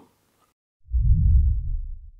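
Silence, then about a second in a deep bass sound effect swells up quickly and slowly fades, with nothing above the low bass, under a logo transition.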